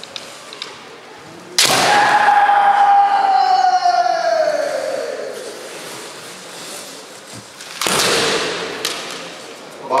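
Kendo fighter's kiai: a long drawn-out shout that begins suddenly a little over a second in and slowly falls in pitch as it fades over several seconds. About 8 seconds in comes a second, shorter loud shout, with a short sharp knock just after.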